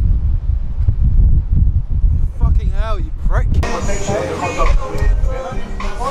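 Low rumble of wind buffeting the microphone on a moving vehicle, with a short warbling tone rising and falling near the middle. Background music comes in a little past halfway.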